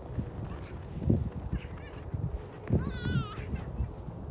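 A child's high-pitched squeal, about half a second long with a wavering, slightly falling pitch, about three seconds in, over irregular low rumbling on the microphone.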